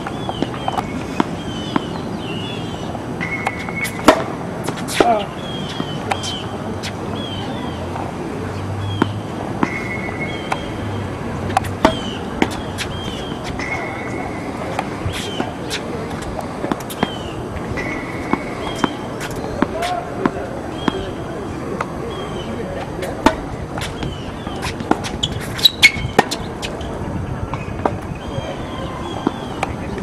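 Tennis balls struck by rackets and bouncing on a hard court: sharp pops scattered through, loudest about four and five seconds in and again near twenty-six seconds in. Birds chirp repeatedly in the background.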